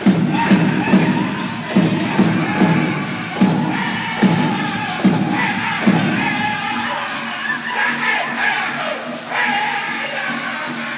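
Powwow drum group ending a song: the big drum is struck in heavy beats, a little under one a second and slowing slightly, with the singers' voices. It stops about six seconds in, leaving the crowd cheering and whooping.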